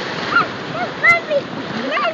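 Ocean surf washing in as foamy white water, a steady splashing rush, with several short high-pitched vocal sounds over it.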